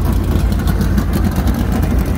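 Dirt late model race car engines idling, a steady low rumble.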